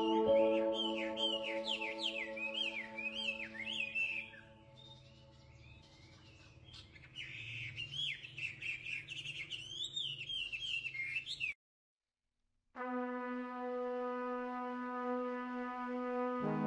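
Songbirds chirping over soft held music chords that fade away; the birdsong cuts off suddenly after about eleven seconds, and after a second of silence a held brass chord begins.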